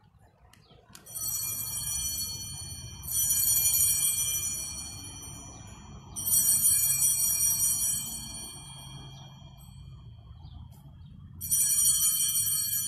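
Altar bells rung at the elevation after the consecration: four shaken peals of bright, high ringing tones, each fading slowly, the last after a longer pause, over a low steady hum.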